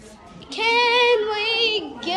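A child's high voice singing one long held note, starting about half a second in, with a slight waver, stepping down in pitch midway and sliding down near the end.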